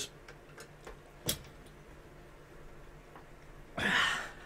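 Small screwdriver turning a tiny screw into a model car's chassis frame: a few faint, scattered ticks and clicks, with one sharper click a little over a second in, then a short rush of noise near the end.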